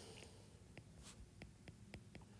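Faint, light ticks and scratches of a stylus writing on a tablet's glass screen: a handful of small taps spread over two seconds.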